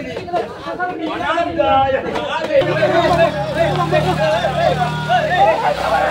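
Several young men shouting and talking over one another during a scuffle. A steady low hum joins from about two and a half seconds in and stops near the end.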